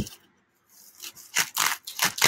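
Scissors cutting through a foam pool noodle: a sharp click at the start, then two long scraping cuts through the foam in the second half.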